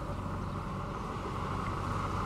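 Cars driving slowly on a wet street: a steady engine hum under a continuous hiss of road noise.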